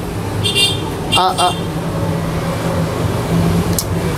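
Steady low drone of a running engine, with a short spoken word about a second in.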